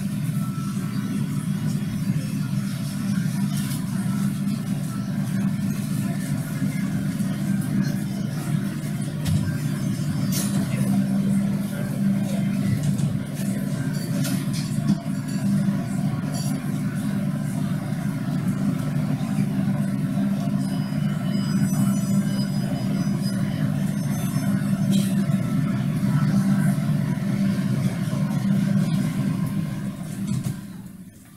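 Steady low rumble like road traffic, played as a sound cue over the theatre's speakers during a blackout. It cuts off suddenly at the end.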